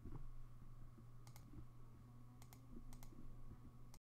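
Quiet room tone with a low steady hum and a handful of faint clicks at the computer, scattered from about a second in.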